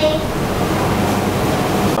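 Steady rushing noise that fills the frequency range evenly, with no distinct events.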